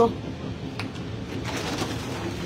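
Steady running rumble inside a train carriage, with a couple of faint clicks.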